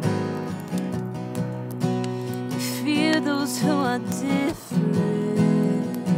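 Acoustic guitar playing a slow chord accompaniment, with a voice singing over it; in the middle a sung note wavers and glides.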